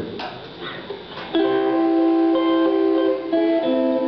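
Fender Stratocaster electric guitar playing a short blues sting: after a brief pause, held chords ring out, shifting to new notes near the end.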